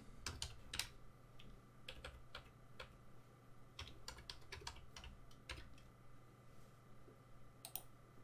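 Faint, irregular keystrokes on a computer keyboard as a name is typed, with a quick pair of clicks near the end.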